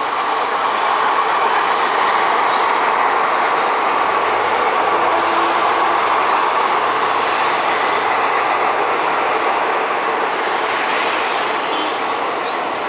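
Indian express train's coaches running across an arched railway bridge: a steady, loud rumble of wheels on the track that eases a little near the end as the train draws away.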